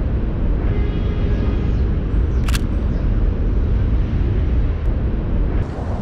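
Steady low rumble of wind and traffic on the bridge, with a single sharp click about two and a half seconds in: the shutter of a Nikon L35AF point-and-shoot film camera firing.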